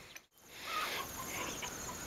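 Brief dropout where the recording cuts, then faint chickens clucking in the background, with insects chirping steadily.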